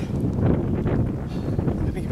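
Wind buffeting the camera microphone, a steady low rumble.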